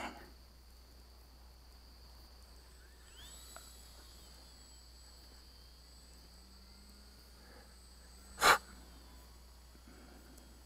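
Mostly quiet with a faint steady high-pitched hum, broken about eight and a half seconds in by one short, loud puff of a person's breath, a snort or sneeze.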